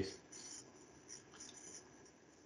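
Faint room noise picked up by the presenter's microphone during a pause in speech, with a few soft, faint ticks.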